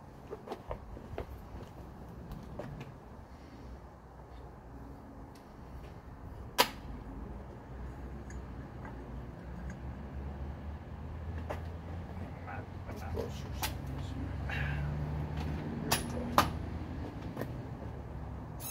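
Faint handling noise while a belt starter rig is set up on a small kart engine: a few sharp clicks and knocks, the loudest about six and a half seconds in and two close together near sixteen seconds. Beneath them a low hum grows through the middle and stops about fifteen and a half seconds in.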